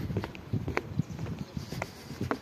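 Footsteps on a hard path, about two steps a second, with low rumble from wind or handling on the microphone.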